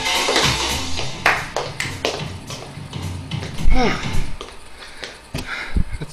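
Tap shoes striking a hardwood floor in quick strokes over recorded music. The music stops about four seconds in, with a short burst of voice, and two heavy thumps come near the end.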